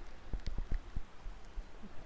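A faint sip and swallow of whisky from a tasting glass: a few small mouth and glass ticks over a low wind rumble on the microphone.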